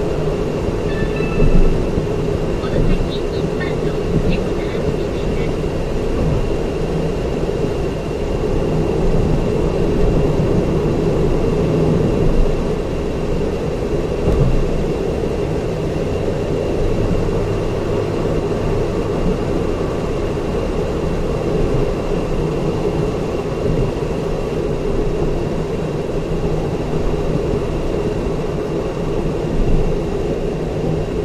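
Car cruising on an expressway, heard from inside the cabin: steady tyre and road noise with engine hum, and a faint constant high tone over it.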